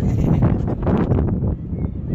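Gusty crosswind buffeting the microphone, a loud uneven low rumble that rises and dips.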